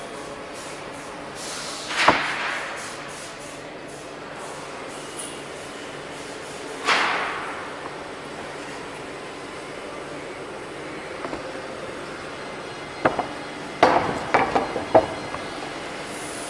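Sawmill machinery running with a steady hum. Two brief whooshing swells come about five seconds apart, and near the end there is a burst of sharp wooden knocks and clatter.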